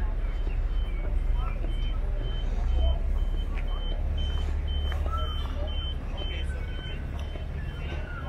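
A high electronic warning beeper repeating evenly, about two and a half beeps a second, over a steady low rumble that grows heavier about three seconds in.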